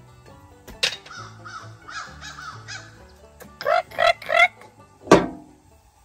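Crows cawing over background music: a quick run of softer caws, then three loud harsh caws near the middle. A sharp click comes about a second in, and a loud knock comes near the end.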